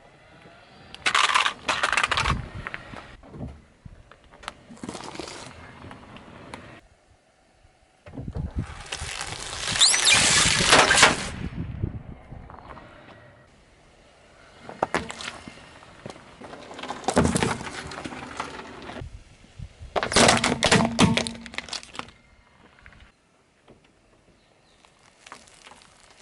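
A car tyre crushing a series of objects in several separate bouts: a plastic toy cracking and breaking apart about a second in, then rubber balloons squeaking and bursting under the tyre. The loudest bout comes around the middle.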